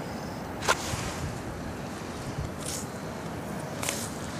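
Steady wind noise on the microphone mixed with distant highway traffic, with one sharp click about a second in.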